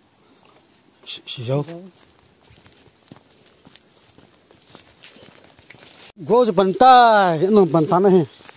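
Footsteps through forest undergrowth under a steady high insect drone. About a second and a half in there is a short vocal sound. Near the end a loud voice calls out for about two seconds in a run of rising-and-falling, sing-song cries.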